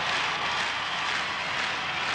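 A steady, even hiss of noise with no pitch to it, like tape static, over a closing title graphic.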